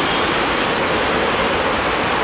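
Steady, loud rushing rumble of rail and road traffic, with no distinct strokes or horn.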